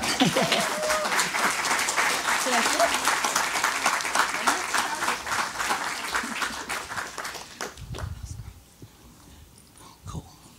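Audience applauding in an auditorium, with a laugh and a few voices near the start; the clapping dies away about eight seconds in.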